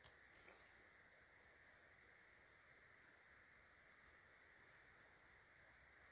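Near silence: faint steady outdoor hiss, with a small click right at the start and another faint tick about four seconds in.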